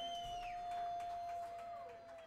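A faint, sustained single note held steady, with softer tones sliding downward above it, starting to fall in pitch near the end: the closing held note of a live jazz septet piece.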